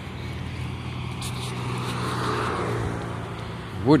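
A motor vehicle passing by: its engine and road noise swell over about two seconds and fade, over a steady low hum.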